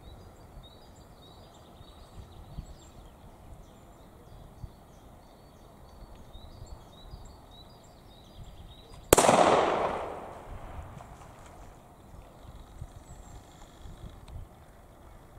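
A single gunshot from a hunting gun about nine seconds in: one sharp crack followed by an echo that dies away over about a second.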